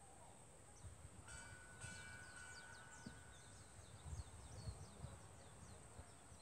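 Near silence outdoors, with faint bird chirps: many short, quick downward notes repeating throughout, and a brief steady whistled tone about a second in. An uneven low rumble sits underneath.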